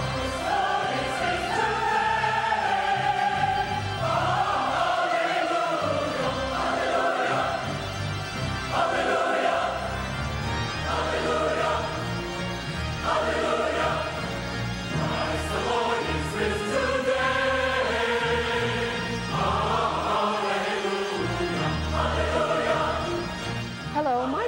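A mixed choir of women and men singing a slow sacred choral piece in long held phrases, with low instrumental accompaniment underneath.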